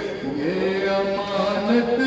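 A male voice chanting soz, the unaccompanied Shia mourning lament, in long held notes, sliding up in pitch about half a second in.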